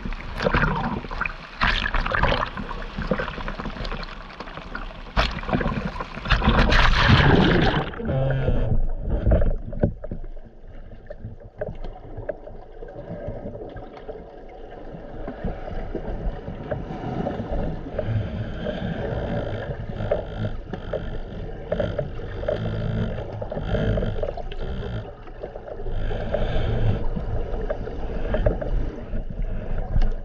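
Small waves splashing and sloshing over the camera at the sea surface for about the first eight seconds, then the muffled, surging rumble of the swell heard underwater.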